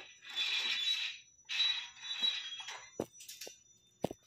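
A dual-layer zebra roller blind being raised by its bead chain. There are two pulls, each about a second of chain and roller noise, then a few light clicks near the end.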